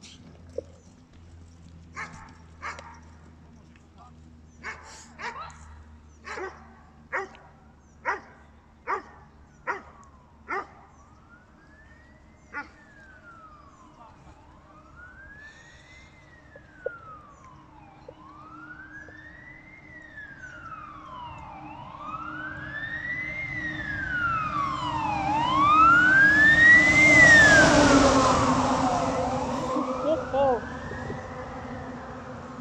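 A Rottweiler barking in a steady series, roughly one bark a second. The barks then give way to a wailing emergency-vehicle siren that rises and falls every few seconds, grows louder to its loudest near the end and begins to fade.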